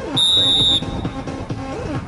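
Referee's whistle, one short steady blast of just over half a second, signalling that the free kick may be taken, over background music.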